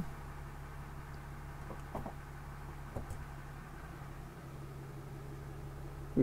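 Diesel pickup engine idling steadily, heard faintly from inside the cab during a 68RFE transmission quick-learn procedure, with two faint clicks about two and three seconds in.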